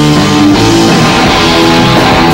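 Live hard-rock trio playing loudly and without a break: electric guitar, bass guitar and drum kit.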